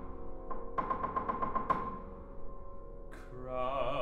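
Steinway grand piano playing quick runs of repeated notes on one high pitch, which ring on and fade. A bass singer's voice comes in with vibrato near the end.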